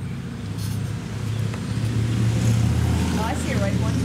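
A motor vehicle's engine running with a low, steady hum that grows louder over the first two seconds and then holds. A voice is briefly heard near the end.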